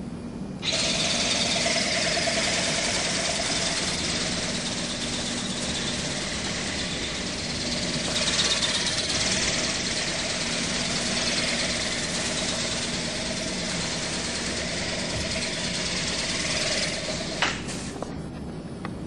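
WowWee Dragonfly RC ornithopter in flight: its small electric motor and gearbox buzz steadily and high-pitched as the wings flap, starting about a second in and cutting off suddenly near the end, followed by a brief click.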